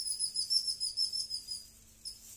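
A high-pitched pulsing trill, like an insect's chirping, repeating evenly, then stopping shortly before the end.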